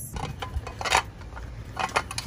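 Handling noises from a person climbing out of a car: a few short knocks and rustles, the loudest knock about a second in.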